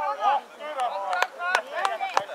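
Several voices shouting during football play in front of a goal, with a run of sharp knocks starting about a second in.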